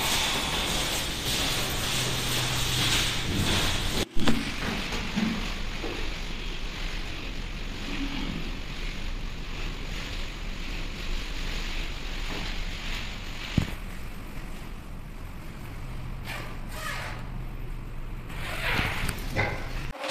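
Rustling of white disposable coveralls being pulled on, over a steady low hum and hiss, with one sharp click about two-thirds of the way through.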